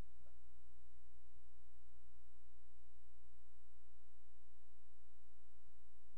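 Steady low electrical hum with a few faint steady tones above it: mains hum and tonal noise in the sound system.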